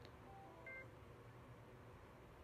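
Motorola MotoTRBO XPR two-way radio powering up: a faint click of the on/off knob, then a short run of electronic beeps, a lower pair followed by a higher one, all within the first second.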